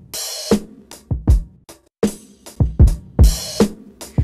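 A hip-hop drum break loop at about 75 bpm playing back, with kick, snare and hi-hats in a repeating pattern. It runs through the Black Box Analog Design HG2 tube processor, which has just been switched in as an external effect.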